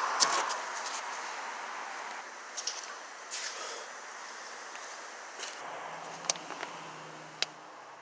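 Handling noises and scattered light clicks, with two sharper clicks near the end, as a spring-loaded steering wheel holder is handled and set in place on a van's steering wheel.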